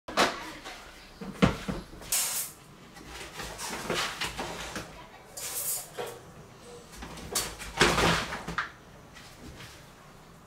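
Kitchen handling noises: an electric rice cooker's lid unlatched and swung open, then a lower cabinet door and pots handled, a string of separate clicks, knocks and clatters about a second apart.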